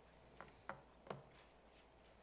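Near silence in a room, broken by three faint short clicks or taps in quick succession about half a second to a second in.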